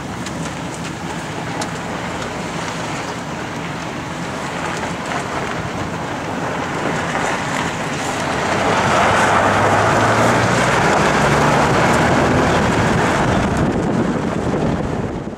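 Ford F-350 Super Duty pickup truck running with a low steady engine hum. About eight and a half seconds in, a louder rushing noise builds as the truck rolls on the gravel road.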